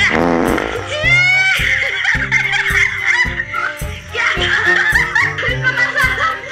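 A sudden fart sound right at the start, then laughter, over background music with a steady beat of about two thumps a second.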